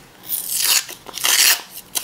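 A plastic screw cap being twisted off a plastic vitamin bottle: two rasping scrapes as the cap turns on the threads.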